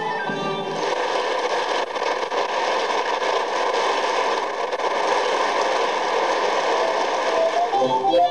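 An audience applauding, a dense even clatter of many hands, as the last of the previous music fades out. Plucked-string music starts near the end.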